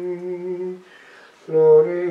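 Chanted singing: one voice holds a steady sung note, breaks off a little under a second in, then starts a new, lower held note about a second and a half in.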